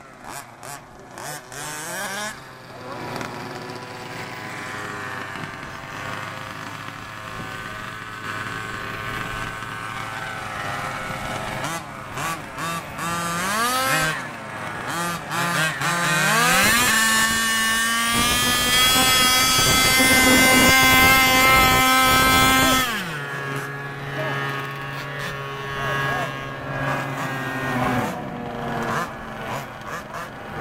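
Small gasoline two-stroke engine of a 1/5-scale RC dragster idling, then revved up about halfway through and held at high revs for about six seconds before dropping back to idle.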